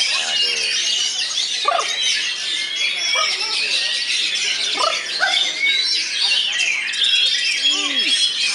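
Caged oriental magpie-robins (kacer) singing without a break, a dense overlapping stream of high whistles, trills and chatter from more than one bird at once.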